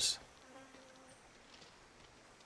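Faint buzz of a flying insect for under a second, low in level over quiet background ambience.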